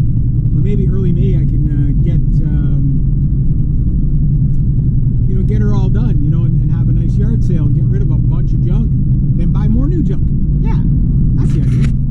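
Steady engine and road rumble heard from inside the cabin of a moving Honda Civic, with a voice talking over it in two stretches.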